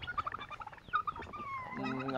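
Domestic turkeys calling: a few short high chirps and one falling whistle-like call about a second in.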